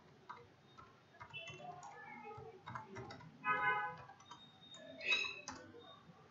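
Computer keyboard being typed on, a string of irregular key clicks. A short pitched sound in the background stands out at about the middle and again near the end.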